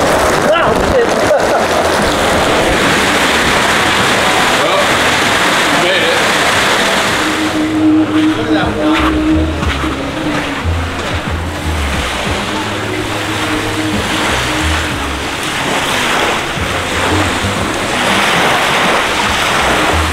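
Heavy rain hitting a hat held over the camera, a dense steady hiss. About seven seconds in, music with a low bass line comes in over it.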